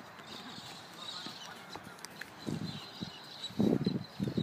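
Faint birds chirping in the open air. About two and a half seconds in, and more loudly near the end, irregular rumbling thumps on the microphone break in over them.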